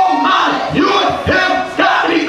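A preacher shouting loudly into a handheld microphone, his voice amplified through the church PA, in one unbroken run of strained, shouted phrases.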